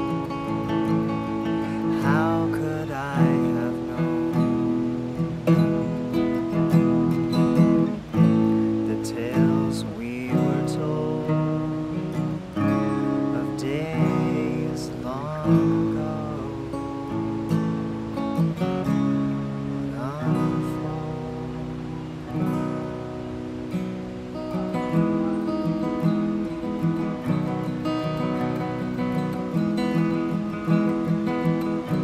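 Acoustic guitar strummed, playing a run of chords that change every second or two.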